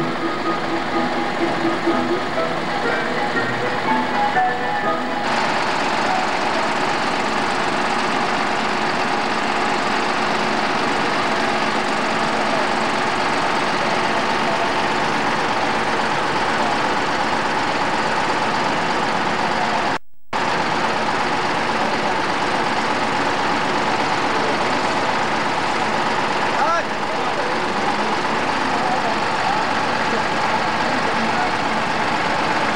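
DAF truck's diesel engine running, with voices and music mixed in. The sound cuts out completely for a split second about twenty seconds in.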